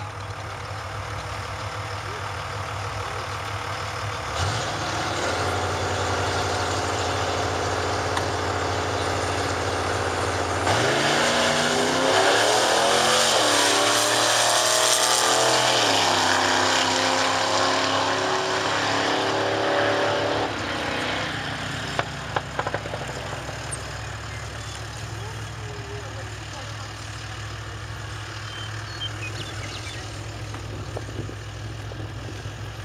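Two drag-racing cars, one a 1972 Chevrolet Nova, idle at the starting line, and their engines rise in level about four seconds in. About eleven seconds in they launch and accelerate hard, the engine note climbing in pitch in several steps through gear changes as they pass, then fading away down the quarter mile to a distant hum.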